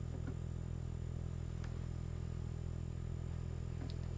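A steady low hum with a few faint ticks, and no voice.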